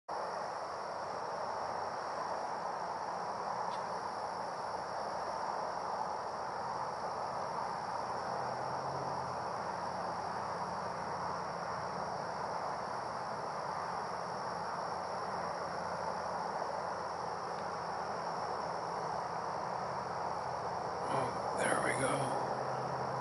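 Steady chorus of insects at dusk: one constant high-pitched tone over a continuous background hiss, unchanging throughout.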